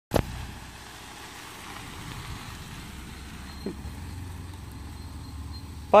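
Campervan engine running with a low, steady rumble as the van drives away, after a sharp click at the very start.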